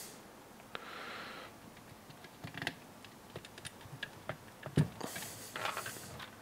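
Faint clicks and taps of small plastic parts being handled and pressed into the plastic front bulkhead of an HPI Baja 5SC chassis, with a sharper knock and some rustling of the chassis being moved near the end.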